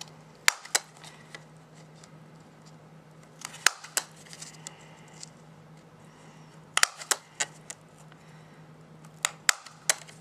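Hole punch cutting semicircle holes in the fold of folded paper leaves: four punches about three seconds apart, each a pair of sharp clicks.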